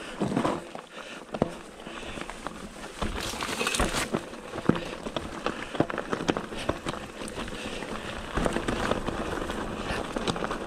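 Mountain bike rolling down a rocky, stony trail: tyres crunching over loose stones, with many short clicks and knocks as the bike rattles over the bumps.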